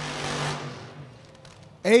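Distant top alcohol dragster engine at high rpm during a burnout: a steady engine note under a wash of noise that fades away about a second in.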